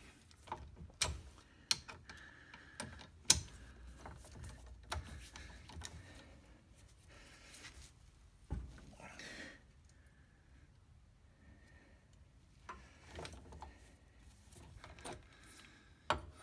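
Scattered sharp metal clicks and clanks from a ratchet handle being worked on a torque multiplier fitted to a very tight axle nut, which is slowly starting to turn. The loudest clicks fall in the first few seconds, and there is a dull thump about halfway through.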